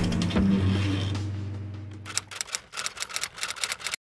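Vintage film projector running: a low hum fades away over the first two seconds, then the mechanism's rapid clicking takes over and cuts off suddenly.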